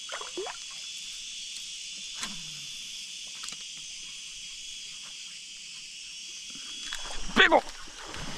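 Steady, high-pitched chorus of insects droning without a break, with one held tone running through it.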